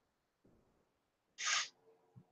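A short, sharp hiss of breath close to the microphone about one and a half seconds in; the rest is quiet room tone.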